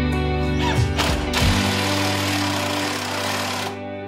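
Cordless drill running for about two seconds, driving a screw, over background guitar music.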